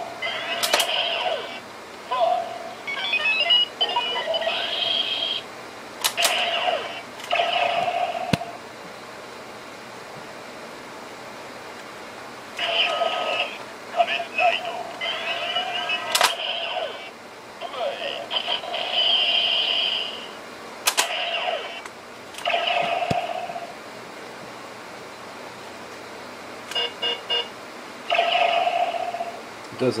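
DX Decadriver toy belt playing its electronic sound effects through its small built-in speaker: tinny voice calls, beeps and jingles in repeated bursts, separated by quiet gaps. Sharp plastic clicks come as the side handles are pushed closed and the buckle is worked, and a quick run of beeps sounds near the end.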